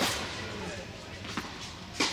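A tennis ball struck by a racket with a sharp pock that rings on in a large indoor hall, followed about a second and a half later by a fainter ball pock during the rally.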